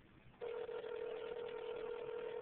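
Telephone ringback tone on a phone line: one steady ring tone begins about half a second in and holds, the signal that the line being called is ringing and not yet answered.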